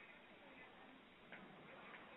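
Near silence: a pause in the talk with faint hiss and one soft click about a second and a half in.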